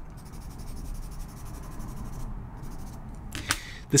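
A drawing tool's tip rubbing on drawing paper: a steady, soft scratching as chalk is worked in.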